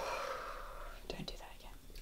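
A woman's breathy exhale fading away, followed by a few faint whispered sounds about a second in.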